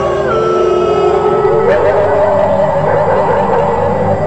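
Eerie horror soundtrack: long held tones, with a wavering, howl-like wail coming in about one and a half seconds in and wobbling in pitch to the end.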